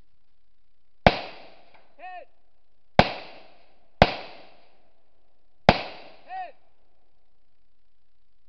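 Four rifle shots, unevenly spaced, each with a short echoing tail. A brief pitched ring follows the first and the last shot.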